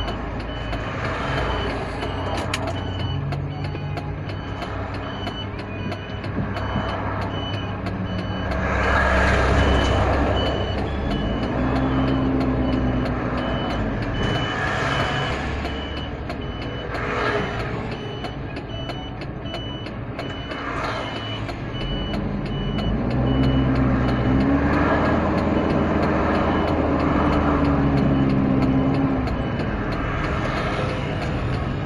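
A vehicle driving in traffic, with steady engine and road noise. The engine speed rises and falls twice as it pulls away and slows. For about the first half, a short high electronic beep repeats about twice a second, then stops.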